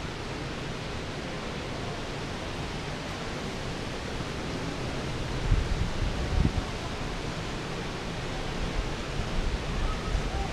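A steady, even hiss of background air noise, with a few low buffeting bumps on the microphone about five and a half to six and a half seconds in and again near the end.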